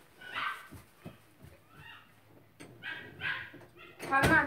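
A pet dog whining and yipping in several short, high-pitched calls, one sliding down in pitch, with a few soft knocks between them.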